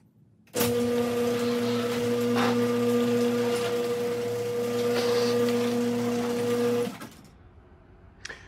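Electric garage door opener running as the sectional garage door rolls up its tracks: a steady motor hum that starts suddenly about half a second in and cuts off about a second before the end.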